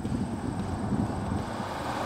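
1977 Oldsmobile Delta 88 Royale pace car with its factory-modified 403 cu in V8 driving along a road toward the listener, a steady low engine and road rumble.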